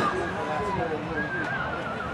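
Voices shouting and calling out across the pitch during play, including a long, wavering yell in the second half.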